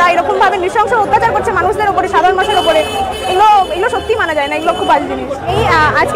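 A woman speaking, with the chatter of a street crowd behind her.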